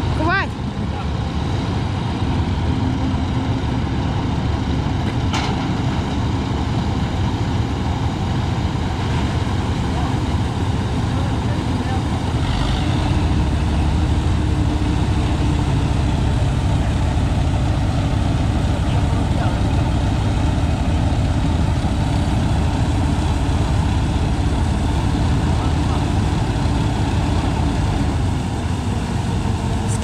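Massey Ferguson MF-487 combine harvester running steadily while its unloading auger discharges grain from the tank onto a tarp. The machine gets a little louder about halfway through, around when the grain starts to flow.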